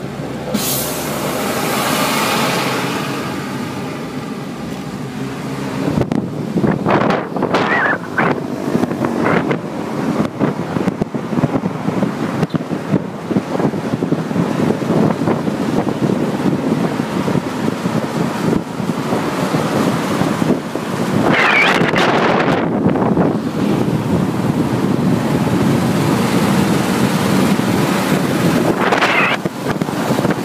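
Road and wind noise of a moving vehicle, recorded from inside it: a steady rumble and rush that swells louder several times.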